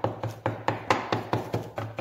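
Knife cutting a peanut butter sandwich on a cutting board: a quick run of knocking strokes, about five a second.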